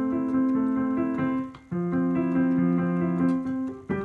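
Digital piano playing two held chords of about two seconds each, with a short break between them.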